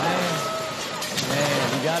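Voices exclaiming over a dense noisy rush of crashing debris and settling wood as a large tree comes down onto a shed roof. The rush fades through the first second, and the voices rise again near the end.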